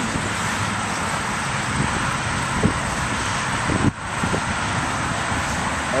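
Steady road traffic noise from passing cars, with a brief drop in level about four seconds in.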